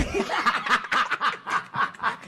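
Men laughing hard in quick, breathy bursts, several a second.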